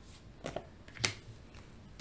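Tarot cards being handled, with two short card clicks about half a second and a second in.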